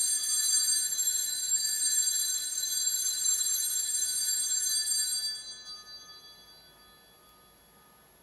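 Altar bells shaken for about five seconds at the elevation of the chalice after the consecration, then ringing away over the next two seconds.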